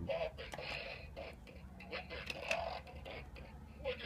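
Bop It Extreme 2 electronic toy playing its game sounds: short voice cues and blips, weak and distorted from a low battery, with scattered clicks from its controls being worked.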